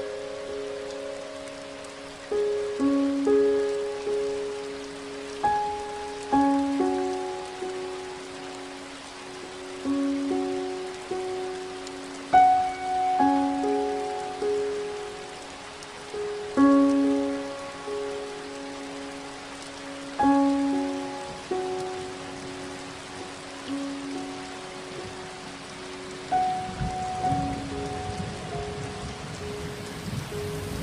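Steady rain under a slow, gentle piano melody, its notes struck every second or two and left to ring out. A low rumble of thunder comes in near the end.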